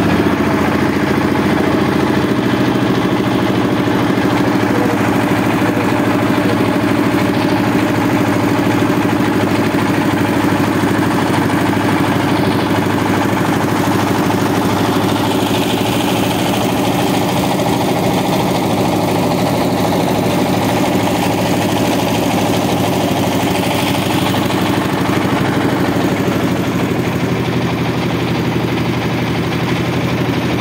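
Boat engine running steadily at an even speed.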